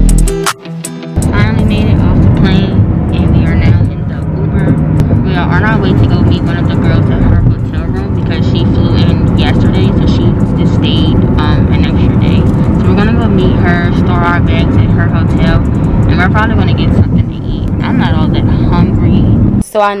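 Music ends about a second in. Then a steady low road rumble inside a moving car, with voices over it.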